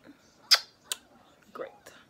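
Two sharp clicks close to the microphone, about half a second apart, the first much the louder, followed by a faint soft sound.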